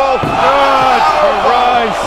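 Excited voices from a wrestling broadcast shouting, with several drawn-out cries overlapping.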